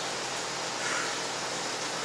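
Steady, even background hiss with no distinct event, only a faint soft sound just under a second in.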